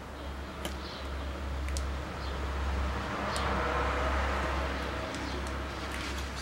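Outdoor background sound: a steady low rumble that swells a little in the middle, a few short sharp clicks, and faint bird calls.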